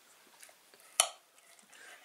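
A single sharp clink of a knife or fork against a plate about halfway through, with a couple of faint ticks of cutlery before it.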